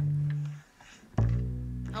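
Two low plucked string notes on acoustic guitar and upright bass, each left to ring: one at the start that fades within about half a second, and a second, deeper one about a second later.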